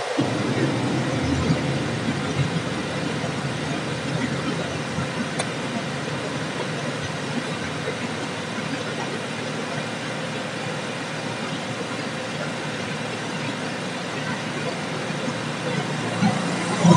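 Steady background noise with a faint hum, unchanging throughout, with no distinct events.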